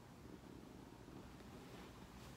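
Near silence: faint, steady low room tone.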